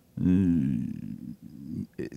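A man's drawn-out hesitation sound, a long 'ehh' held for over a second mid-sentence before he goes on speaking.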